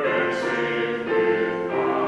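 Congregation singing a hymn together, held notes changing every second or so.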